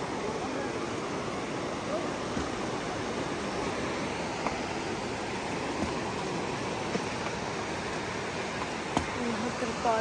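Steady rushing of a fast river running over shallow rocky rapids below, with faint voices near the end.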